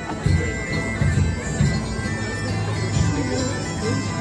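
Bagpipe music: a tune played over a steady held drone.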